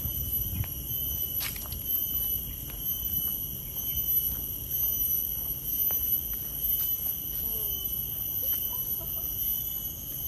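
Steady high-pitched insect drone of a tropical forest, with the light, regular footsteps of someone walking on a paved path. A few short chirps come in near the end.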